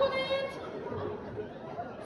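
Speech: a woman's voice on stage holds one drawn-out word for about half a second at the start, then goes quieter and fainter.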